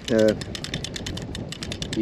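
DAM Quick 550 spinning reel being cranked, with rapid, even ratchet-like clicking from its anti-reverse lever stepping from tooth to tooth.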